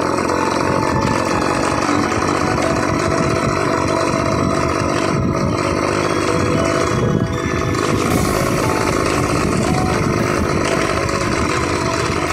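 Motorcycle engine running steadily while riding along a gravel dirt track, with road and wind noise. The level briefly dips about seven seconds in.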